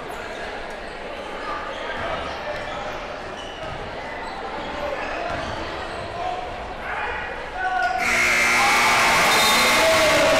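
Basketball bouncing on a gym's hardwood floor amid players' and spectators' voices. About eight seconds in, the scoreboard's end-of-period buzzer sounds as the clock runs out, and a loud crowd cheer goes up with it.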